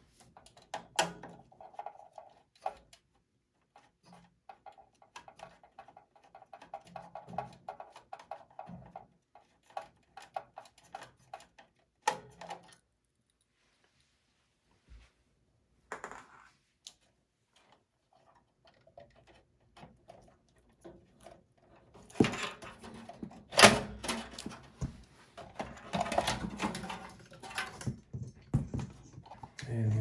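Light clicks and scraping of a screwdriver working on a desktop PC's steel chassis, then a quiet stretch, then metallic clattering and knocks as the power supply unit is worked loose and lifted out of the case, the sharpest knock a little past two-thirds of the way through.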